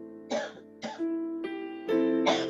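Soft piano music with held notes, and a person coughing twice, once about a third of a second in and again just before the one-second mark.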